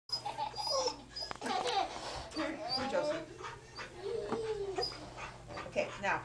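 A dog whining in short whimpers that slide up and down in pitch, broken up throughout.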